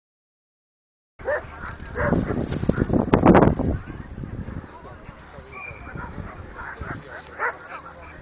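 A dog barking in a loud run of barks starting about a second in, then people's voices in the background.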